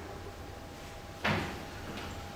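A single short knock or clunk a little past a second in, over faint room tone with a thin steady hum.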